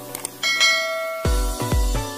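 Bell-like notification chime sound effect, struck about half a second in and ringing out, as the bell icon is clicked. A little over a second in, electronic music with a heavy bass beat, about two beats a second, takes over.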